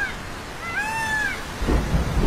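A single arching, meow-like animal call about a second in, a cartoon sound effect. Near the end a low rumble of thunder and rain begins.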